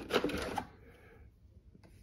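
Pull-out drip tray drawer of a FoodSaver V4880 vacuum sealer sliding open: a short sliding rattle lasting about half a second near the start.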